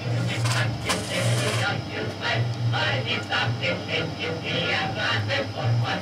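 Music with a voice played through a loudspeaker from a small hi-fi tower, the programme whose audio is amplitude-modulating the tube transmitter.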